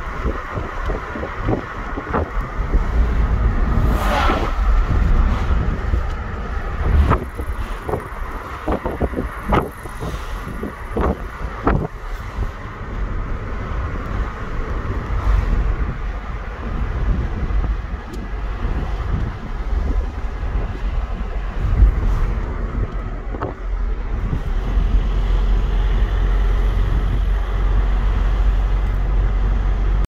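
Road and engine noise heard inside a moving car's cabin: a steady low rumble, with several short clicks and knocks in the first twelve seconds or so.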